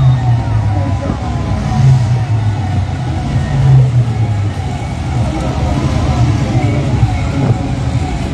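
Tractor engine running steadily as it drives, a low hum throughout, with voices of the accompanying crowd mixed in.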